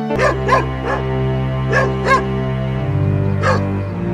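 A dog barking six times in short sharp barks, some in quick pairs, over sustained background music.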